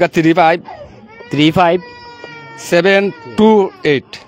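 A person's voice in about five short phrases with pauses between them.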